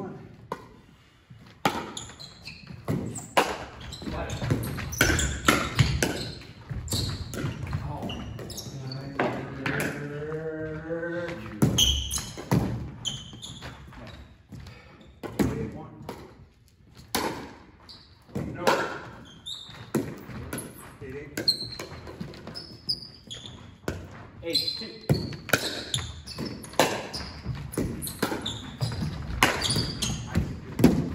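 Pickleball rally: sharp, irregular knocks of paddles hitting the plastic ball and the ball bouncing on a hardwood gym floor.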